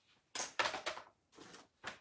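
Faint handling noises of craft supplies being reached for and picked up: a few short rustles and a brief click near the end.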